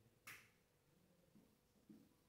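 Near silence broken by a single short, sharp click about a quarter of a second in, followed by two faint soft sounds near the end.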